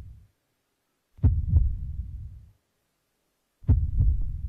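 Two slow, deep heartbeat-like double thumps, about two and a half seconds apart. Each lub-dub pair rings out low for about a second into silence, opening the music.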